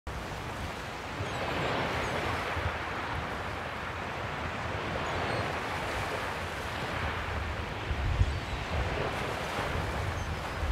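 Waterside ambience: a steady wash of wind and water, with wind gusting against the microphone in low rumbles, strongest around eight seconds in.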